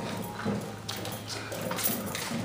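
Footsteps and a hand truck's wheels coming down a metal loading ramp off a moving truck: a few separate knocks, the sharpest about a second in and near the end.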